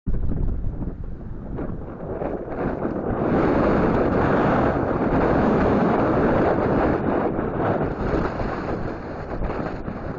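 Wind buffeting the phone's microphone in a steady roar of noise, strongest from about three to seven seconds in, with breaking surf beneath it.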